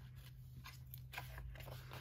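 Faint handling of a paper sticker book: pages being lifted and leafed through by hand, giving a few soft, separate clicks and light rustles.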